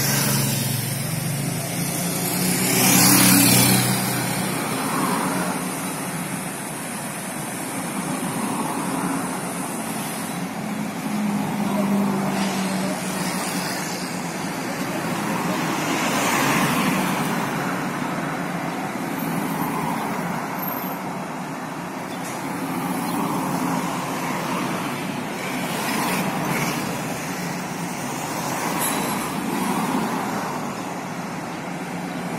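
Road traffic going by: cars and heavier vehicles passing in swells, the loudest about three seconds in, with an engine's low hum under the first few seconds.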